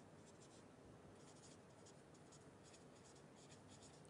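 Very faint writing strokes on a lecture board, short irregular scratches in near silence.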